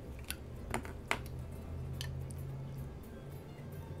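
A few light clicks from handling an ebonite fountain pen and a clear plastic ruler, four short ticks spread over the first two seconds, over a faint low hum.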